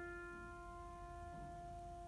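Soft piano music: a held chord slowly dying away between phrases, with no new notes struck.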